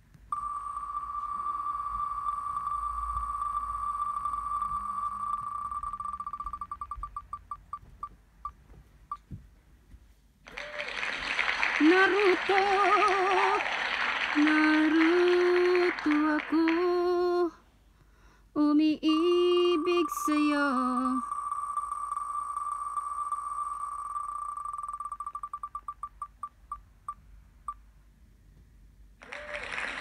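An online spin-the-wheel name picker spinning twice. Each time, its ticks come so fast they blend into a steady high tone, then slow into separate clicks and stop as the wheel settles on a name. Between the spins there are several seconds of applause-like noise with a voice humming a tune over it.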